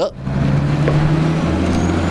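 Wheeled armoured personnel carrier's engine running as it drives past: a loud, steady low drone that deepens about halfway through, with a faint high whine rising slowly above it.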